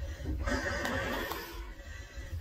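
Low rumble and rustling of a handheld phone being moved about, with a soft hiss of rustling lasting about a second.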